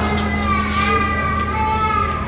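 A woman's high-pitched, drawn-out wailing cries: one long cry through the first second or so, then a shorter one near the end.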